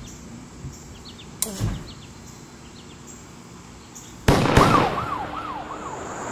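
Faint chirps over quiet outdoor ambience, then a loud sudden bang a little after four seconds in, followed at once by a fast, repeating rising-and-falling siren-like wail. A steady high whine like crickets starts near the end.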